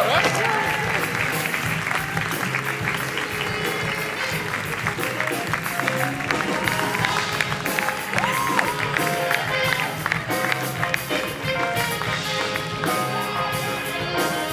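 A small live band with drum kit and guitars playing upbeat music while an audience claps and cheers, with excited voices in the crowd.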